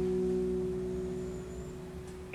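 Amplified electric guitar chord left ringing through the amps, a few held notes slowly fading away.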